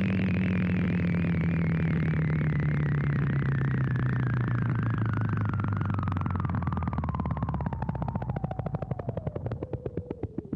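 Synthesizer sound effect: one long falling sweep over a low drone that also sinks, with a pulsing that slows down near the end, like something winding down.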